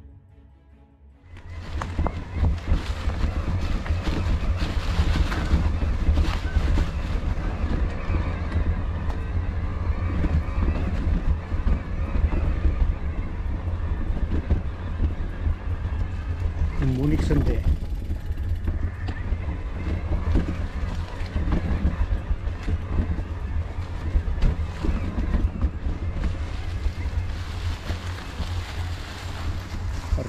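Wind buffeting the microphone of a camera on a moving e-bike, with the tyres rolling over a dry, leaf-covered forest trail and small knocks and rattles from the bike; it starts abruptly about a second in, as faint music ends.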